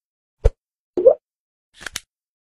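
Sound effects of an animated TV-channel logo ident: a short low thump about half a second in, a pitched plop about a second in, and a brief hiss that swells near the end as the logo appears.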